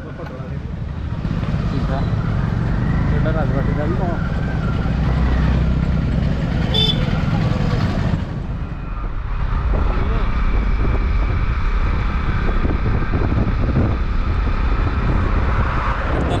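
Motorcycle on the move: wind buffeting a helmet-mounted microphone as a loud, steady low rumble, with the bike's engine running underneath. A brief high-pitched tone sounds about seven seconds in.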